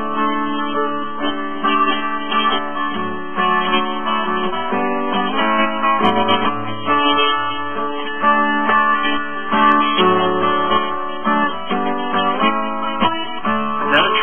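Acoustic guitar strummed in steady chords, an instrumental passage with no singing.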